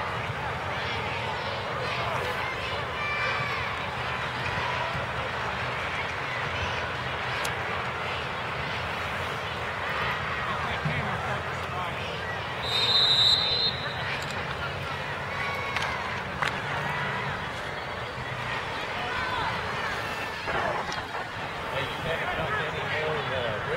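Crowd chatter from spectators at a football game, many voices overlapping, with one short, shrill whistle blast about halfway through, typical of a referee's whistle.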